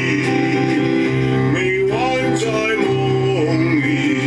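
Music: a Mandarin love-song duet, with a singing voice gliding through the melody over held instrumental accompaniment.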